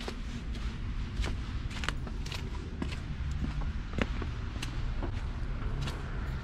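Footsteps on a thin layer of wet snow, a short crunch about every half second, over a steady low rumble.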